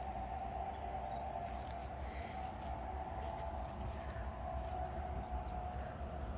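Quiet outdoor ambience: a steady faint hum with a low rumble underneath and a few faint ticks.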